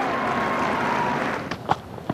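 Live ground sound of a cricket match: a steady hiss of crowd and open-air ambience, then a few short, sharp knocks about a second and a half in as the ball is bowled and met by the bat.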